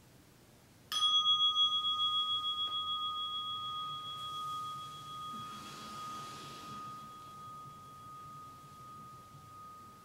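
A meditation bell struck once about a second in. It rings one clear tone with a fainter higher overtone, pulsing slowly as it fades over the following seconds, marking the end of the meditation period.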